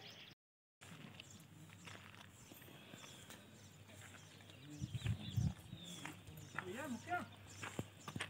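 Faint outdoor ambience with birds chirping, a brief dropout at an edit cut, a cluster of low thumps about five seconds in, and voices near the end.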